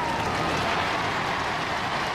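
Large studio audience cheering and clapping, a steady wash of crowd noise.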